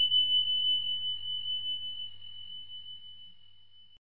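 A single high, bell-like chime ringing and slowly fading away, one steady tone with a slight waver.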